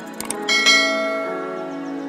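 Subscribe-button animation sound effect: a couple of quick clicks, then a bright bell chime that rings out and slowly fades, over soft background music.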